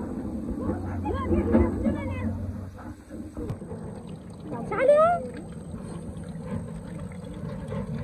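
A person's voice in short phrases, loudest in an exclamation about five seconds in, over a steady low rumble that eases after about three seconds.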